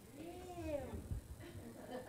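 A faint voice from the audience: one drawn-out vocal sound that rises and then falls in pitch, over low murmur in a lecture hall.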